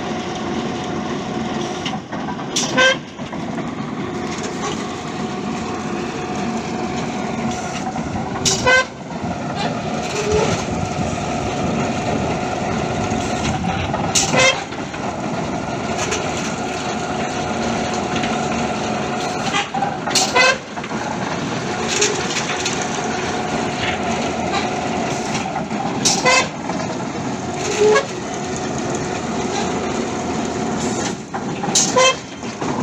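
Winch-driven pile-boring rig running steadily with a whine, and a sharp metallic clank about every six seconds.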